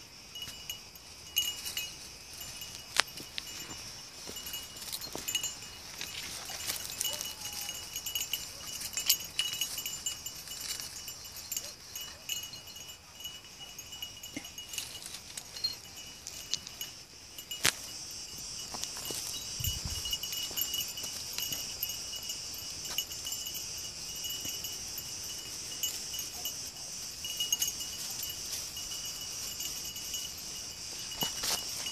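Steady high-pitched insect chorus, typical of cicadas on a hot day, with scattered sharp snaps and crackles through dry brush and a dull thump about two-thirds of the way in.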